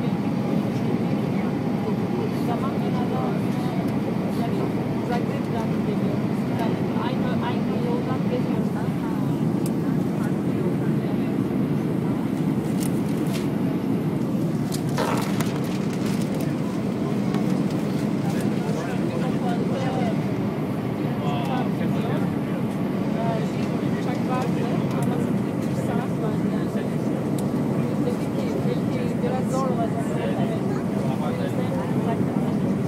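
Steady cabin noise of an Airbus A320 on approach, heard from a window seat over the wing: the engines and rushing air make an even roar. A few light clicks come about halfway through.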